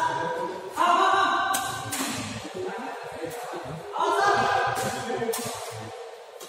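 Background singing: several voices hold a chord that comes in at the start, again just under a second in, and again about four seconds in, fading each time. Several sharp hits fall between the chords.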